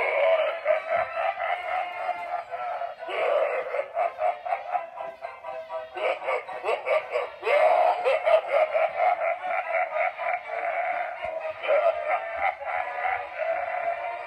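Swinging Happy Clown animatronic Halloween prop playing its built-in song through its small speaker: a thin, tinny singing voice over a tune, with short pauses between phrases.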